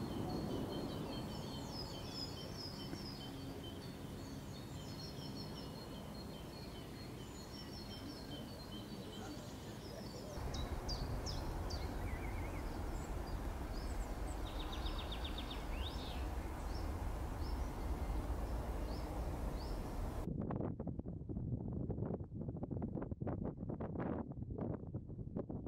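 Outdoor ambience with small birds chirping over a steady hiss. About ten seconds in it switches abruptly to a louder low rumble with a few chirps. Near the end it switches again to gusty wind buffeting the microphone.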